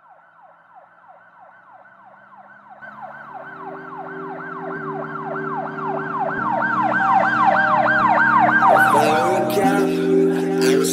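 A siren wailing in a fast repeated falling sweep, about three times a second, fading in and growing louder. Synth chords of a song's intro come in under it about three seconds in, and the beat starts near the end.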